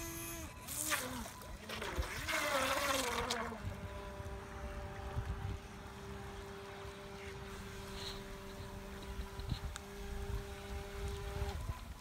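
GoolRC GC001 RC speed boat's electric motor whining across the water. Its pitch slides up and down over the first few seconds, then it holds a steady whine at constant throttle and cuts off suddenly just before the end.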